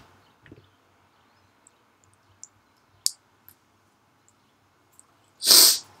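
A person's short, sharp burst of breath about five and a half seconds in, loud and hissy. A few faint clicks come before it.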